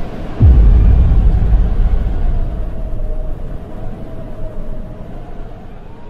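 A deep cinematic boom hit about half a second in, trailing off in a low rumble that fades over the next several seconds, with a faint held tone above it: the closing hit of a promo soundtrack.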